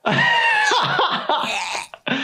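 A cartoon character's voice straining, gagging and retching, several loud heaves in a row.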